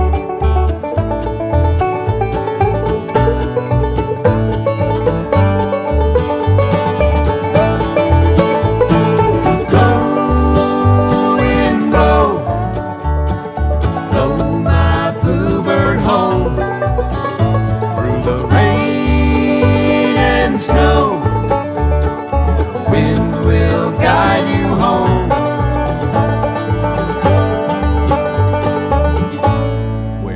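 Instrumental break by an acoustic bluegrass band: banjo and guitar play over a steady upright-bass beat, while a lead line glides between notes.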